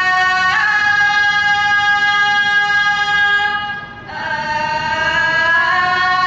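Thai classical khon accompaniment: a single high, reedy melody of long held notes that steps up about half a second in, dips briefly around four seconds, then slides upward.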